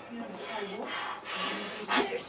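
Large bolt cutters biting on a steel locker padlock: metal scraping and rasping as the jaws are squeezed, with a sharp metallic click near the end.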